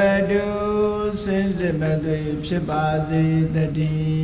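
A Buddhist monk's voice chanting Pali verse in long, steadily held notes on a near-monotone, stepping down to a lower pitch about halfway through.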